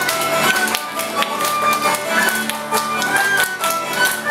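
Traditional folk tune played live on tin whistle, acoustic guitar, banjo and mandolin, with a high whistle melody over strummed chords. Hands clap along to the beat throughout.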